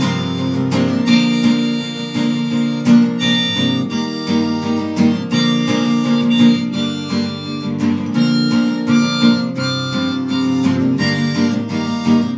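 Harmonica played in a neck rack, carrying the melody over acoustic guitar accompaniment.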